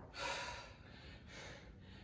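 A man breathing hard after a set of push-ups: one short, airy breath about a quarter second in and a fainter one about a second and a half in.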